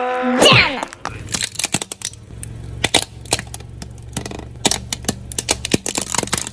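Plastic toy cars cracking and snapping as a car tyre rolls over and crushes them: a long run of irregular sharp cracks over a low steady hum. A short cartoon-style gliding voice sound comes right at the start.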